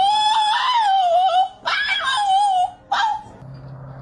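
A dog whining in long, wavering, high-pitched cries: one long cry, a second about a second and a half in, and a short one near three seconds. A steady low hum follows near the end.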